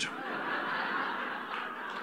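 An audience laughing together after a punchline, a broad wash of many voices that slowly dies away.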